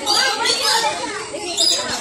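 Children's voices, several kids chattering and calling out together.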